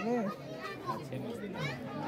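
Voices talking and chattering, with no other sound standing out.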